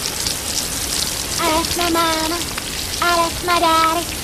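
Shower water spraying in a steady hiss. From about a second and a half in, a voice sings short held notes over it.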